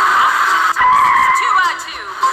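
Electronic sound effects from a battery-operated toy excavator's small built-in speaker: tinny synthesized noises sliding up and down in pitch, switching abruptly to a new sound about two-thirds of a second in and fading down near the end.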